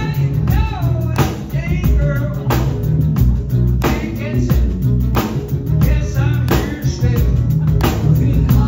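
Live rock band playing, with a male lead singer singing into a handheld microphone over drums and guitar; a strong drum hit lands about every second and a quarter.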